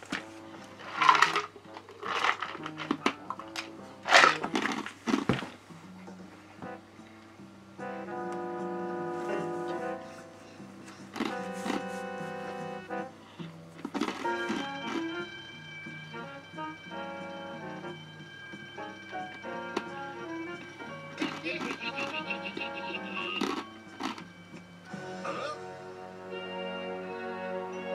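Cartoon soundtrack: a few short, loud sounds in the first six seconds, then light tuneful music with held notes.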